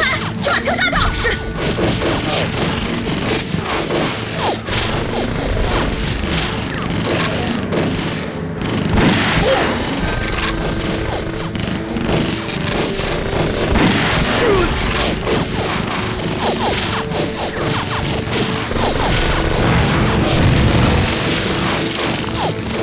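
Film battle soundtrack: repeated gunshots and explosion booms over a dramatic music score.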